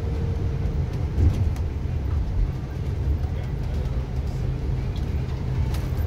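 Neoplan Tourliner coach's diesel engine and road noise, a steady low rumble heard from inside the cabin.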